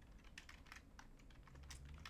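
Computer keyboard being typed on: a run of faint, irregular key clicks.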